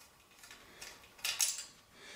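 Light metallic clicks and scraping from handling the brass horn's valve body as a small screw is worked out of its end, with a short louder cluster of clinks a little past halfway.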